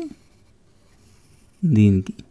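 Pencil drawing a line on workbook paper, a faint scratch in the pause between spoken words.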